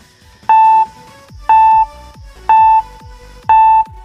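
Quiz countdown-timer sound effect: four short, identical electronic beeps evenly spaced about once a second, each with a low thump under it.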